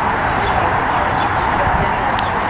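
Steady outdoor background noise with murmuring voices and a few short high bird chirps, over the dull hoofbeats of a horse loping on soft arena dirt.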